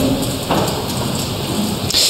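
A steady rushing hiss with no speech in it, growing brighter near the end.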